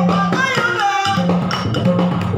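Yakshagana singing in the Balipa style, a wavering solo voice, with hand strokes on a maddale barrel drum over a steady low drone.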